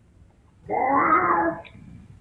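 A single drawn-out cat meow, a bit under a second long, starting about two-thirds of a second in.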